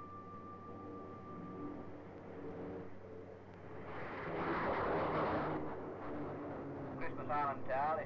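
English Electric Canberra jet bomber taking off, its two Rolls-Royce Avon turbojets giving a steady whine. The jet noise swells to a peak about halfway through as the aircraft passes, then eases off.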